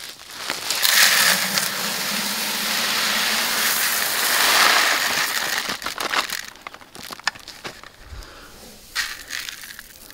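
Mixed cover crop seed (grains, winter peas, clover and rapeseed) poured from a bag into a plastic five-gallon bucket: a steady rushing rattle lasting about five seconds, then scattered ticks as the flow stops.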